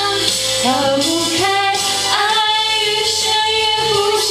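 A young woman singing a Mandarin pop ballad into a microphone over a backing track, gliding between notes and then holding one long steady note in the second half.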